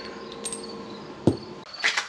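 Crickets chirping steadily in the background, with a faint steady tone under them. A single short knock comes a little over a second in.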